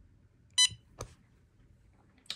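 A touchscreen board's buzzer gives one short, high beep about half a second in, acknowledging a stylus tap on a touch button, followed about half a second later by a single sharp click.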